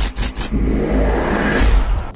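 Intro sound design over heavy deep bass: a rapid stutter of sharp hits, then a rising swell that builds to a peak and cuts off at the end.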